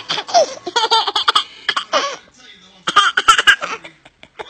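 A young child laughing in several bursts, with a short pause about two and a half seconds in.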